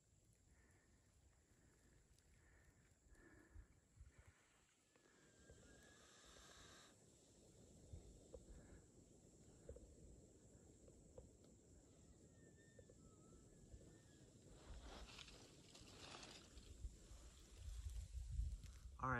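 Near silence: faint outdoor ambience with a few soft clicks.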